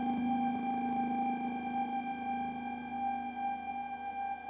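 Ambient hollow-body electric guitar drone through effects pedals: several steady, ringing tones held without a break, with a lower tone fading out near the end.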